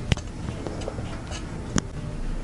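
A metal wire whisk stirring a thick mix of dulce de leche and melted chocolate in a bowl: soft scraping with faint ticks, and two sharp clicks of the whisk against the bowl, one just after the start and one near the end.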